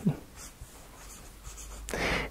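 Faint scratching of writing on a board.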